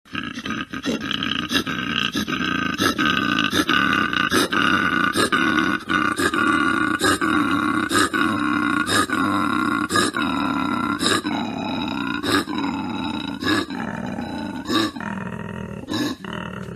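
Koala bellowing: a loud, continuous rasping call that pulses about once a second and eases off a little near the end.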